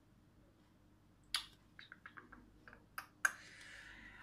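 Faint clicks in a quiet room: one sharp click about a third of the way in, then a handful of small soft ticks, and two more clicks close together near the end.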